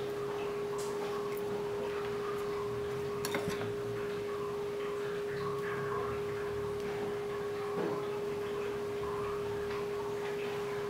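A steady, unchanging tone, like a hum or whine of one pitch, with a couple of faint clicks, one a little after three seconds in and another near eight seconds in.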